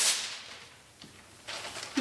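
A sheet of paper being picked up and handled: a sudden sharp sound at the start that dies away within about half a second, a faint click about a second in, and soft rustling near the end.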